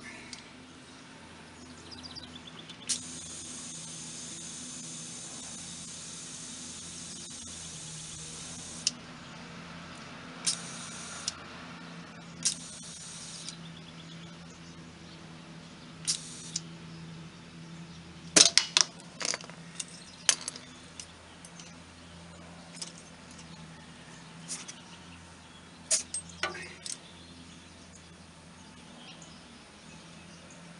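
Compressed air hissing through an air chuck into a dually pickup's rear tire valve: one long steady hiss of about six seconds, then two shorter hisses. After that come short sharp clicks and brief spurts of air as the chuck is pressed on and off the valve, loudest a little past the middle and again near the end.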